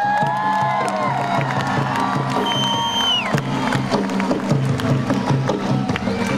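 Music with a steady repeating beat over a cheering crowd. Long held high calls slide in pitch over it, and one drops away about halfway through.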